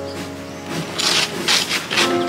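Hand ice scraper rasping over ice on a car's body or glass, in strokes about two a second starting about a second in, over background music.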